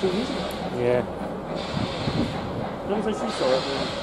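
Indistinct voices of people chatting on a station platform, heard in short snatches over a steady background hiss of station noise.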